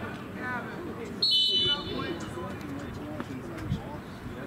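Referee's whistle blown once, a steady high blast of about half a second a little over a second in, awarding a penalty kick. Voices shout from the sideline around it.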